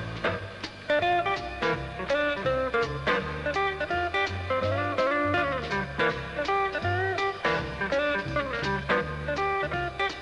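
Jazz trio playing a fast tune: electric archtop guitar picking single-note lines with some notes bent, over upright bass and drums.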